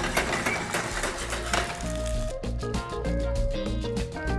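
Freshly boiled, still-wet pierogi sizzling in hot oil in a frying pan. About two seconds in, background music with a regular beat takes over.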